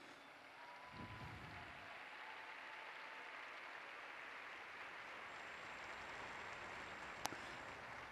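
Faint applause from a large crowd, an even patter of clapping that swells slightly, with a single click near the end.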